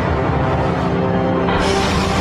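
Suspenseful film-score music with sustained low tones. A brighter, rushing swell comes in near the end.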